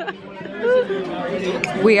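Chatter of diners at a dinner table: several voices talking over one another, with a laugh near the end.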